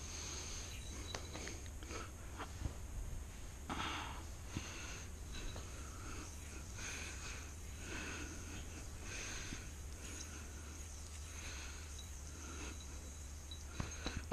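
Quiet room with a low steady hum, soft nasal breaths every second or two, and a few faint ticks from a yo-yo being played on its string.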